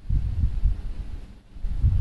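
Low, uneven rumble of wind buffeting the microphone, dropping away briefly about a second and a half in before returning.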